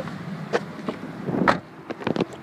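Clicks and rustling of movement and camera handling as a person gets out of a car, with one louder knock about one and a half seconds in. After the knock the steady cabin air-conditioning hum drops away.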